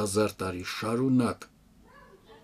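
A man's voice finishing a sentence, the last word drawn out with a pitch that rises and then falls, stopping about a second and a half in; after that only faint room sound.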